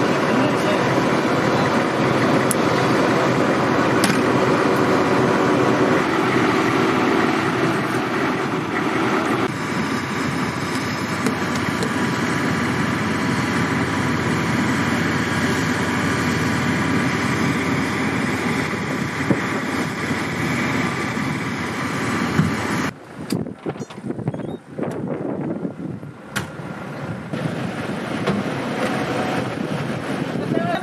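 An engine running steadily, a dense drone with constant humming tones. It cuts off suddenly about 23 seconds in, leaving a quieter, uneven outdoor sound.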